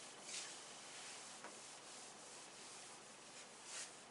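A cloth duster wiping marker off a whiteboard: faint rubbing, with two louder swipes, one near the start and one near the end.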